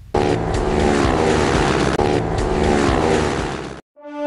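Racing motorcycle engine at high revs, its pitch falling, heard twice in a row with a brief break about halfway, then cutting off abruptly near the end.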